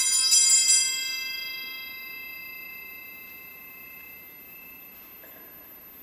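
Altar bells rung at the elevation of the chalice: a rapid jingling peal that stops about a second in, its ringing then fading away over the next few seconds.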